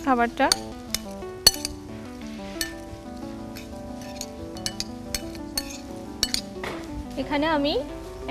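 A metal spoon clinking and scraping against a glass bowl as raw prawns are stirred in a marinade: scattered sharp clicks over soft, sustained background music.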